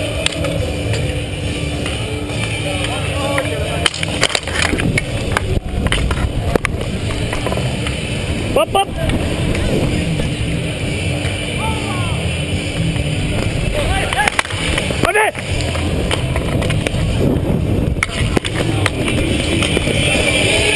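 Street hockey play heard from a helmet-mounted camera: a steady rumble of wind and movement on the microphone, with sticks and ball clacking and scraping on the paved surface in scattered sharp knocks, and a few short shouts.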